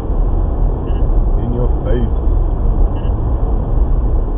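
Steady low road and engine rumble inside a car's cabin at about 50 mph. A few faint, short high beeps come from the radar detectors alerting to Ka-band radar.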